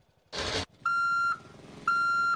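Backup alarm of a heavy construction machine beeping twice, each beep about half a second long and about a second apart, over a low engine rumble. A short harsh burst of noise comes just before the first beep.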